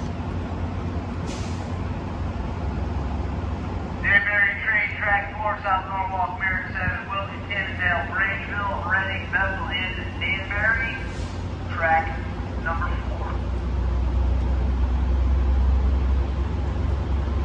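A spoken public-address announcement over the station loudspeakers, sounding thin and cut off in the highs, from about four seconds in until near the end. Under it runs a steady low rumble of rail traffic, which grows louder over the last few seconds.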